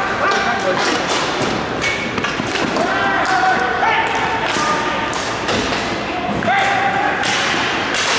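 Ball hockey play on a plastic tile sport court: repeated sharp clacks and thuds of sticks and the ball striking the court and one another, with players shouting.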